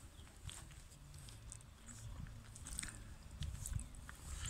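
Faint footsteps and handling noise from someone carrying a phone camera while walking: scattered soft clicks and rustles over a low rumble.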